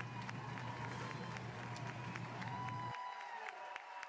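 Faint room tone after the narration: a steady hiss with a low hum, the hum cutting off sharply about three seconds in.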